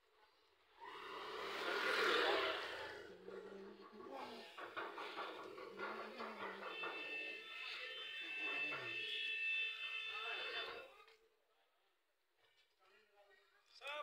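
People's voices talking in the street, from about a second in until about eleven seconds, with a steady high tone held for a few seconds in the middle. The last few seconds are quiet.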